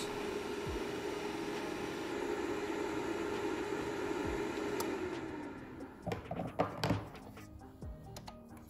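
Cooling fan of a UV curing lamp box running steadily, then winding down in pitch about five seconds in as the cure timer runs out. A few clicks and knocks follow as its metal drawer is pulled open.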